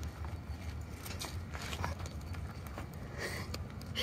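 Green, unripe luffa skin being torn and peeled by hand off the fibrous sponge inside: scattered faint crackles and snaps over a low steady rumble.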